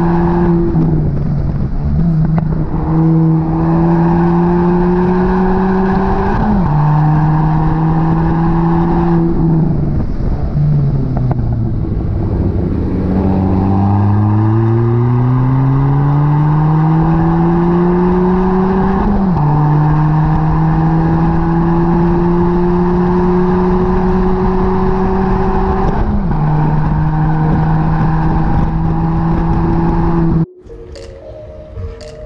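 A 2018 Ford Fiesta ST's turbocharged 1.6-litre four-cylinder through an aftermarket Thermal R&D cat-back exhaust, run hard at full throttle on a race track: the engine note climbs and drops back at each of several upshifts. About ten seconds in the note falls as the car slows, then it climbs steeply through the gears again.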